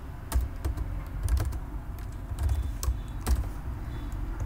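Computer keyboard typing: an uneven run of about a dozen keystrokes, starting about a third of a second in.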